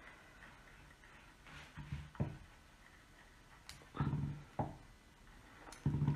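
Mostly quiet, with a few soft clicks and knocks as a metal double-wheel pastry cutter trims excess fondant around the base of a cake.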